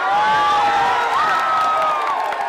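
Fight crowd cheering and yelling, with several voices holding long shouts over the general noise of the crowd.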